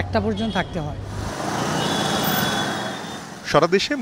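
Road traffic noise, a steady wash from motorcycles and cars in dense city traffic. It lasts about two seconds after a man's speech ends and before another voice begins.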